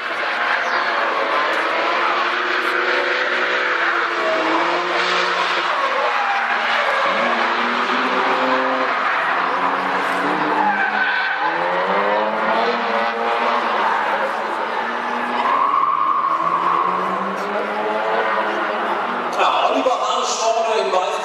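Drift car engine held at high revs, its pitch rising and falling repeatedly as the car slides sideways, over the hiss and squeal of tyres spinning and skidding; a steady tyre squeal stands out for a couple of seconds near the end.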